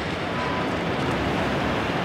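Steady outdoor city ambience: an even rumble and hiss of street traffic.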